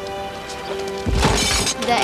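A loud crash about a second in, lasting about half a second, over background music.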